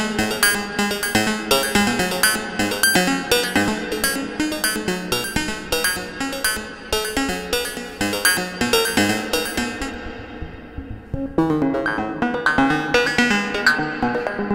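Moog Labyrinth semi-modular synthesizer playing a self-patched generative sequence through reverb: a quick, steady stream of short, ringing notes whose pitches jump widely, with the sequencer's CV range turned all the way up. About ten seconds in, the sound darkens and drops for a second as the tone is turned down, then comes back bright.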